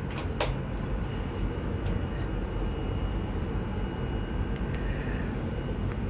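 Steady low rumble of background noise, with a couple of sharp clicks in the first half-second and a few faint ticks later on.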